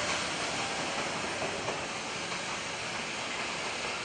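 Freight train rolling away on the rails with the EF67 electric banking locomotive pushing at its rear: a steady rushing noise of wheels and running gear, slowly fading.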